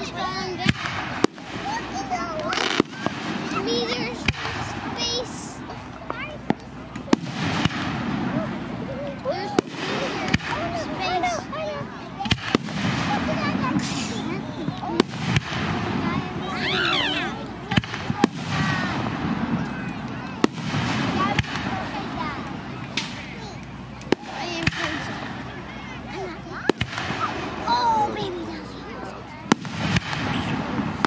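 Fireworks bursting: frequent sharp bangs at irregular intervals, over a steady hum of spectators' voices.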